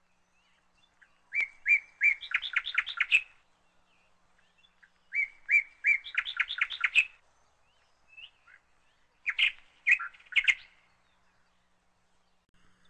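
A songbird singing three short phrases with pauses between. Each phrase opens with a few separate notes and speeds into a quick run of notes; the last phrase is shorter.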